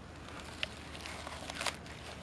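Brittle, sun-rotted polyethylene tarp crackling faintly as a hand handles it: a few short crackles over a quiet outdoor background, the sharpest one about one and a half seconds in.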